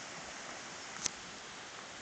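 Faint, steady outdoor background hiss by the water, with one short click about a second in.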